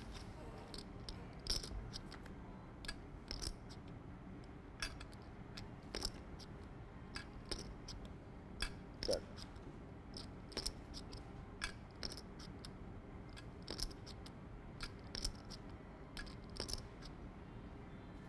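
Poker chips clicking against each other as a player fiddles with a stack: short, sharp clicks, often in quick pairs, about one or two a second, over a faint steady room hum.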